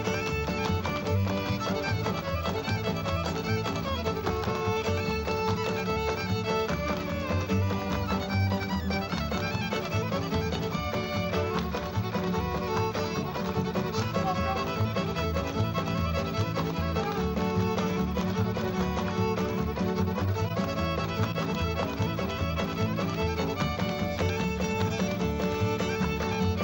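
Fiddle playing a lively old-time square-dance tune, backed by a string band with guitar, upright bass and drums keeping a steady beat.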